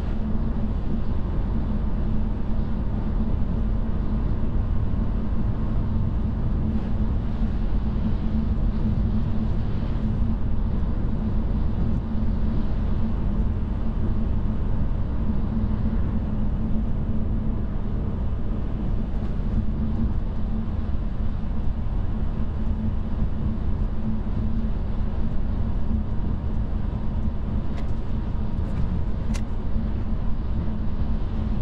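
Steady low road and tyre rumble heard inside the cabin of a Tesla electric car driving on a snow-covered highway, with no engine note. Two faint ticks come near the end.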